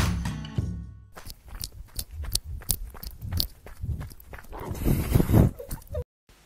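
Background music fades out within the first second. Then comes a quick, irregular run of footsteps, about three or four a second, with a burst of rustling near the end.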